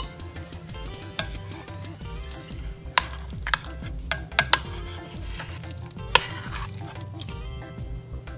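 A metal spoon scraping cream cheese off a ceramic plate into a pot of broth, with several sharp clinks of spoon on plate.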